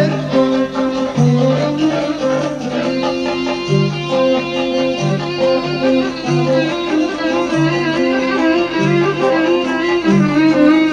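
Instrumental passage of a Turkish folk song: a violin plays the melody over plucked strings and a bass line of repeated low notes. A wavering sung line stops at the very start.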